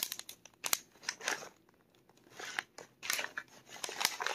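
Hands rummaging through small objects: a string of light clicks and knocks with short bursts of rustling and crinkling, and a brief pause midway.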